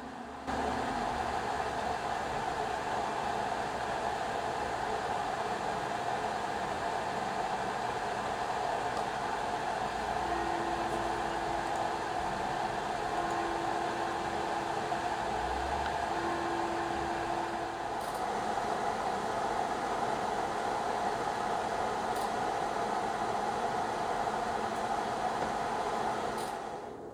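AMD Radeon RX Vega 56 reference blower cooler's fan running, a steady, even rushing noise that starts about half a second in and holds level, reading about 60 dB on a phone sound meter on top of the PC case. The owner calls this fan unbearably loud.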